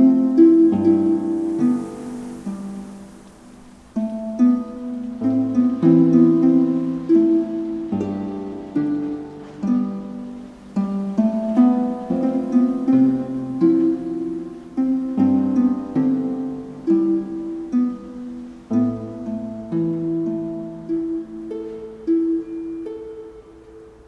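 Solo Celtic harp played as a free improvisation: plucked notes and chords ring and die away, in phrases that swell and fade every few seconds, with a brief lull about four seconds in.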